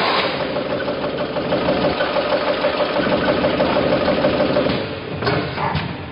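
Coffee capsule packing machine running: a dense, steady mechanical rattle with a humming tone that stops near the end, after which separate clicks are heard.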